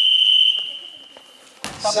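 Referee's whistle blown in one long, steady, high blast that stops about half a second in and fades away in the hall's echo, calling a foul. A thump follows near the end.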